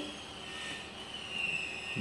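A faint, thin, high-pitched whine that dips slightly in pitch and rises again, over a low steady hiss.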